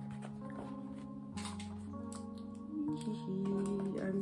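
Background music with held chords over a low bass line that shift every second or so. A few faint taps and rustles come from a cardboard box being handled and opened.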